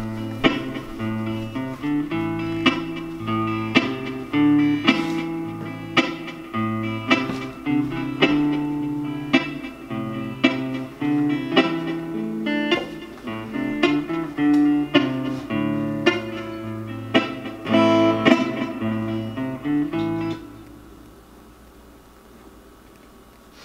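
Yamaha APX600 acoustic-electric guitar playing a looped, layered pattern of plucked notes over a low bass line. The music stops abruptly about twenty seconds in.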